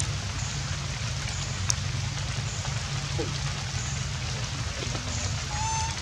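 Steady rain hiss over a low rumble, with a single sharp tick a little under two seconds in and a short, high, steady-pitched call near the end.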